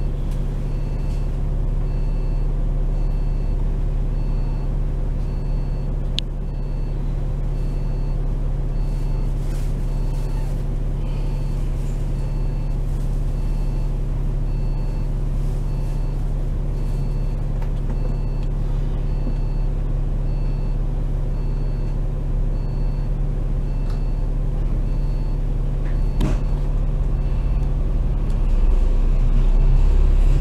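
Double-decker bus engine idling steadily while the bus stands in traffic, with a faint high beep repeating about once a second. Near the end the engine note begins to rise as the bus starts to pull away.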